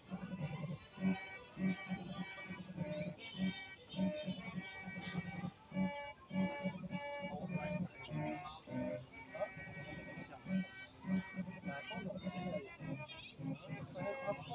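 Music with a steady beat and melody, played by a display of Star Wars Space Opera musical toy figures on their linked speaker bases.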